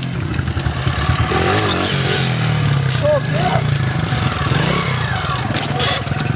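Small pit-bike motorcycle engine running steadily, with faint voices under it.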